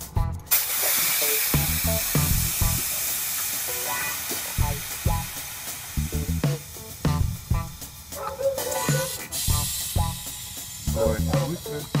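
Compressed air hissing in a car's air suspension. It starts abruptly about half a second in and slowly fades over several seconds, with a second short hiss near ten seconds, over background music with a beat.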